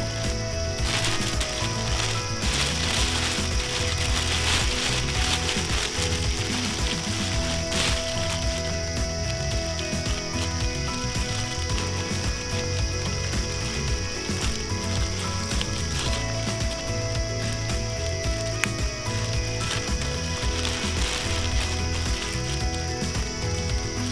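Steady, rapid ratcheting chirr with a continuous high whine, typical of a tropical forest insect chorus, running evenly with no single loud event, over soft background music.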